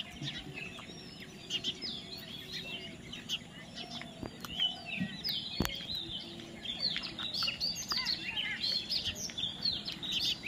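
A flock of parakeets chattering with many short, overlapping high chirps that grow busier in the second half. There is one sharp click about halfway through.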